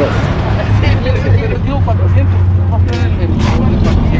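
People talking nearby in short bits of conversation, over a steady low hum that holds one pitch throughout.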